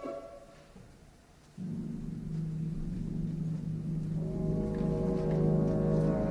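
Opera orchestra: after the last sung note dies away and a brief near-silent pause, low brass come in with a held soft chord about one and a half seconds in, with higher instruments joining the sustained harmony about halfway through.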